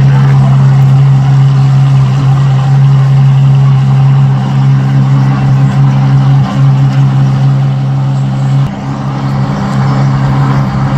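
A car-hauler truck's engine idling with a loud, steady low hum. About nine seconds in it drops in level.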